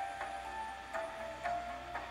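Background music from a television programme: a short run of held single notes in the mid range, each note starting sharply and changing pitch about every half second.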